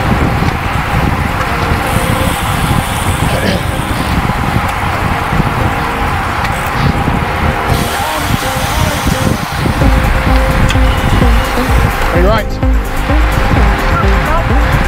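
Wind rushing over a bicycle-mounted camera's microphone at racing speed, growing heavier about ten seconds in. Music plays over it.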